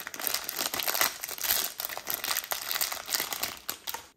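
Thin plastic candy wrapper crinkling and crackling in gloved hands as the pack is opened and three small plastic bottles are pulled out. It is a dense crackle that starts and stops abruptly.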